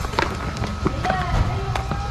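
Soapy water sloshing and squelching in a plastic basin as hands scrub and wring the helmet's foam liner pads, in irregular splashes. A voice is heard faintly behind it in the second half.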